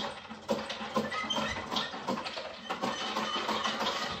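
Continuous scratchy rustling and rapid clicking of a plastic long-handled pooper scooper being scraped and worked over a playpen floor mat.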